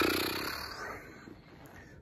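A man's drawn-out, raspy exhale, like a sigh through the throat, fading out over about a second and a half.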